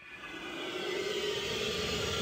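A steady rushing drone with a faint hum in it, swelling in over the first half-second and then holding level.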